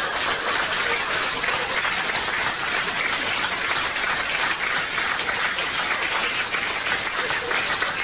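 Live audience applauding, a steady dense clapping that holds throughout.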